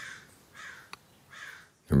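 A bird calling three times in the background, each call short and rough.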